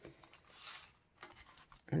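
Soft paper rustling and rubbing as hands handle a small handmade paper booklet, strongest about half a second in, with a few light ticks of paper just after a second.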